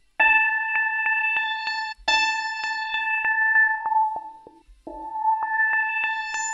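A sample played back as a software instrument in Ableton Live's Simpler through a filter with high resonance: a ringing, pitched tone sounded three times, about two seconds each, with overtones that grow brighter through each note and a run of clicks that quickens within it.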